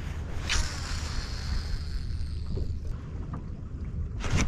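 Wind rumbling on the microphone over open water from a kayak, steady and low, with a short rustle about half a second in.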